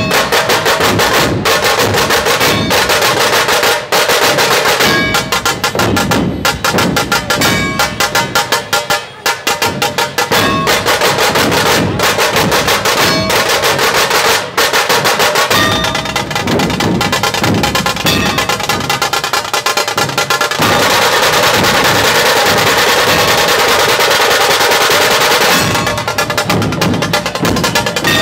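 Dhol-tasha ensemble drumming: large double-headed dhol drums beaten with sticks under the sharp rattle of tasha drums, in a loud driving rhythm. Near the end the playing becomes a continuous fast roll.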